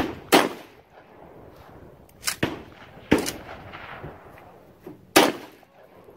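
Mossberg 500 pump-action shotgun fired three times, about two to three seconds apart, each loud report followed by a short echo. Quieter clacks come between the shots as the pump slide is worked to chamber the next shell.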